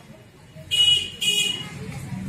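Two short, high-pitched honks of a vehicle horn, about half a second apart.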